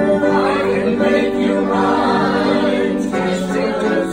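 A man and a woman singing a song together, holding long notes.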